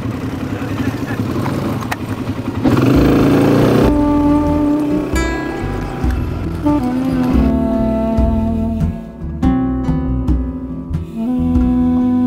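A quad bike engine running, louder from about three seconds in. About four seconds in, background music with plucked guitar takes over for the rest.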